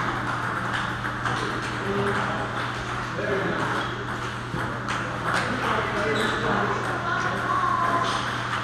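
Table tennis rally: a celluloid ball clicking sharply and irregularly off paddles and the table, over a murmur of background voices and a steady low hum.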